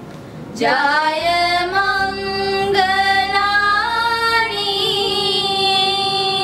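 A small choir of girls singing a slow melody in unison. A new phrase begins about half a second in after a short pause, with long held notes.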